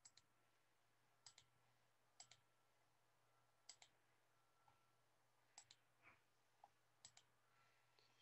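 Near silence: room tone with a faint low hum and about six faint, short double clicks spaced irregularly.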